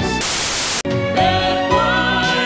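Pop music cut off by a loud burst of static hiss lasting about half a second, a splice between two songs. The hiss drops out for an instant, then a new song begins about a second in, with a male vocal group singing.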